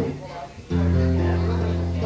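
Acoustic guitar: a low note or chord struck suddenly under a second in and left ringing steadily.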